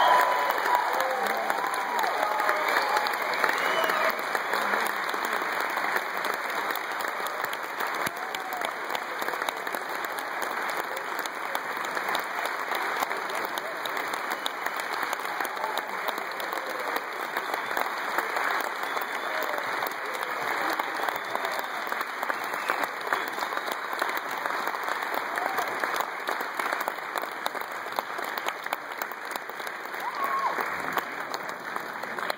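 Concert audience and band applauding after a brass band performance, a dense, sustained clapping that is loudest at the start and eases slightly. A few voices call out in the first few seconds.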